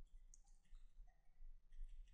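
Very faint clicking and scratching of a stylus writing on a graphics tablet, in short spells about half a second in and again near the end.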